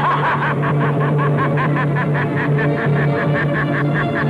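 A man laughing loudly in a rapid, sustained run of 'ha' pulses, about six a second, over background music.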